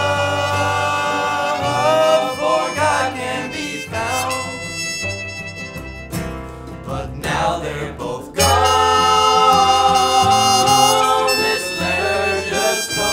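Instrumental break in a bluegrass-style song: a trumpet carries the lead melody in long held notes over banjo, acoustic guitar and cello. The band dips in the middle, then comes back in suddenly louder about eight and a half seconds in.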